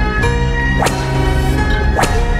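Dramatic TV-serial background score with held notes, cut by a sharp whoosh sound effect about a second in and a second, weaker one near the end.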